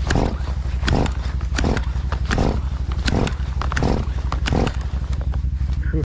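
A chainsaw's recoil starter being yanked again and again, about once every three-quarters of a second, over a steady low rumble, the engine failing to catch.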